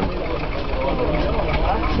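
Big Bull tractor's engine running, with a rapid, even low beat.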